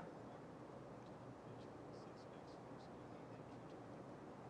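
Near silence: faint room hiss with a few faint soft ticks of a small paintbrush dabbing paint onto canvas.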